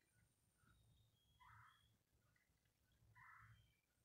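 Near silence, broken by two faint, short bird calls nearly two seconds apart, with scattered faint high chirps.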